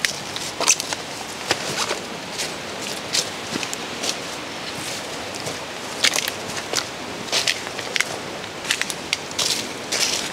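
Footsteps crunching through dry leaf litter and twigs on an overgrown path, with irregular crackles and snaps.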